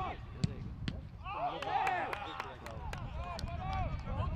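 Footballers calling out to each other during a training game on grass, with a run of sharp knocks from the ball being kicked, most of them in the second half.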